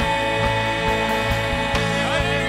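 Live contemporary worship band music: women singing a long held note over a steady beat of about two pulses a second, with a new sung phrase starting near the end.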